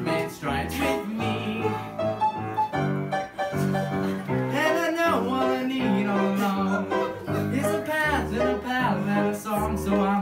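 Live piano accompaniment under men singing a musical-theatre song, the voice gliding between held notes.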